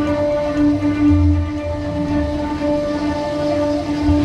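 Dark-ride vehicle rumbling along its track, with a few louder swells, under a steady droning tone that holds one pitch throughout.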